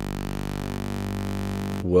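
Serum software synthesizer playing a hand-drawn wavetable as a sustained low bass note, one steady pitch rich in overtones. Its tone shifts as the waveform is redrawn, and it cuts off just before the end.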